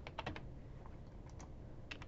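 Typing on a computer keyboard: faint, irregular key clicks, a cluster in the first half second and more near the end.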